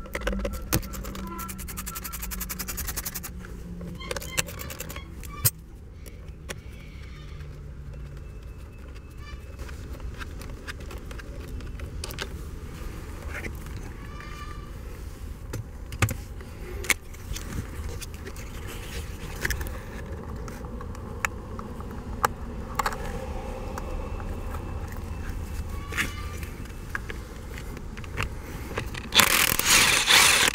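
Hand-tool work on a car's steering wheel: scattered clicks, taps and scrapes of tools and plastic as the driver's airbag is taken off. Near the end, a cordless drill fitted with a socket runs briefly and loudly on the steering wheel's centre bolt.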